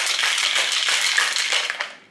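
Ice rattling hard in a cocktail shaker being shaken rapidly, stopping abruptly just before the end.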